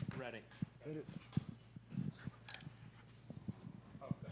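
Faint, brief voices in a quiet room, with a few light clicks and knocks.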